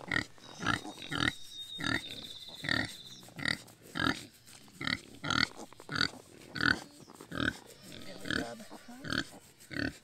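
A heavily pregnant black sow grunting steadily while she is stroked and rubbed, about three short grunts every two seconds.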